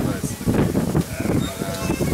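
A man speaking, with a drawn-out call held at one steady pitch near the end.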